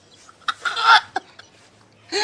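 A man sobbing hard: one loud, choked sob about half a second in, followed by a short catch of breath.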